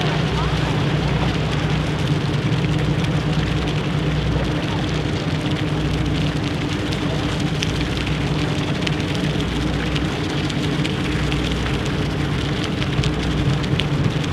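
Steady low machinery hum of the 1942 steam-turbine Great Lakes freighter SS Alpena passing close by at slow speed, over a continuous hissing wash of water and wind.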